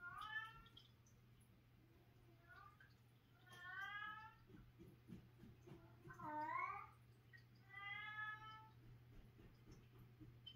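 A domestic cat howling: five drawn-out yowls, one of them short, the fourth bending up and then down in pitch.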